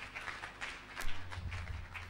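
Congregation clapping: many quick, uneven hand claps at a fairly low level.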